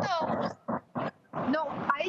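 Short bursts of a person's voice coming over a video-call link, with no other distinct sound.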